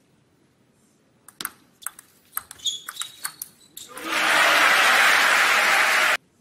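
A short table-tennis rally: a quick run of sharp clicks as the plastic ball hits the rackets and table, with a few shoe squeaks on the court floor. About four seconds in, the crowd breaks into loud cheering and applause for the won point, which cuts off abruptly.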